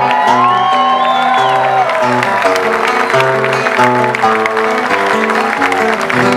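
Live Argentine folk music in a break between sung verses: an acoustic guitar over a bass line that changes notes about twice a second, with a crowd clapping along.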